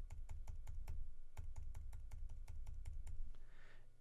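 A computer keyboard key tapped over and over at an even pace, about six presses a second, stepping the editing timeline forward frame by frame. The tapping stops shortly before the end.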